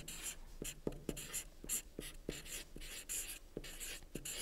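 A felt-tip marker writing on a white board: a quick run of short squeaky strokes with small taps as the letters are formed.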